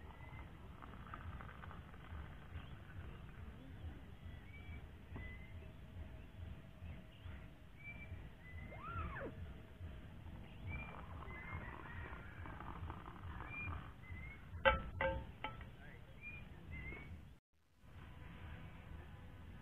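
Birds chirping with short repeated calls over a steady low wind rumble on the microphone. A quick run of sharp clicks comes about 15 seconds in.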